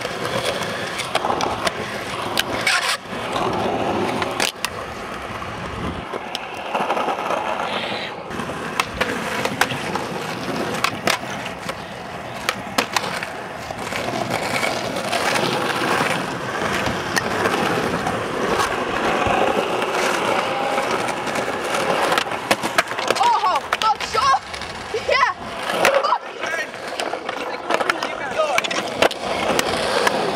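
Skateboard wheels rolling over asphalt, a steady rough rumble throughout, broken by a few sharp knocks.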